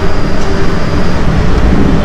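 Ducati Scrambler's 803 cc air-cooled L-twin engine idling with a steady low rumble.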